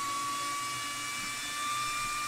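Cooling fans of an Accton AS5712-54X 48-port 10-gigabit network switch screaming: a steady high whine over a hiss, creeping slightly up in pitch.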